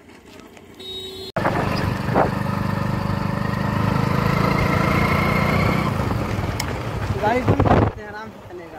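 A moving road vehicle's engine hums steadily under wind rushing over the microphone while riding along a road, starting suddenly about a second in. A voice briefly speaks over it near the end.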